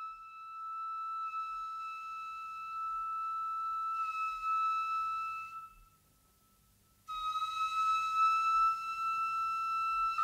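Intro music: a flute holding long, steady high notes. It breaks off for about a second and a half just before the middle, then starts another long note.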